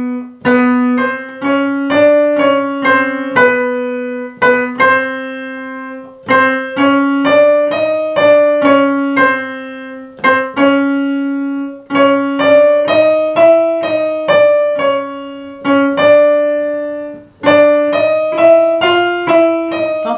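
Piano notes played on an electronic keyboard, struck one after another in half-step (semitone) steps. A short chromatic figure climbs a few semitones and returns, then starts again a little higher each time, as the accompaniment to a chromatic-scale pitch exercise for singers.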